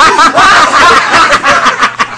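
Several people laughing loudly, many voices overlapping in rapid bursts that thin out toward the end.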